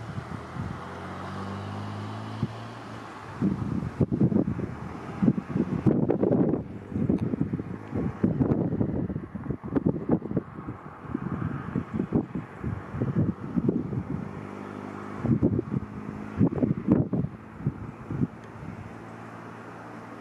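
Wind gusting on the microphone in loud, irregular low rumbles, with a steady low hum under it in the first few seconds and again midway.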